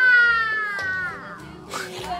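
A young child's voice: one long, high-pitched drawn-out call that falls slowly in pitch over about a second, then trails off.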